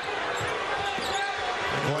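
Televised basketball game sound: arena crowd noise with court sounds of play.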